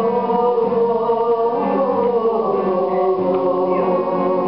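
Singing of an old Serbian folk song, the voice held on long, gliding notes over a plucked string accompaniment.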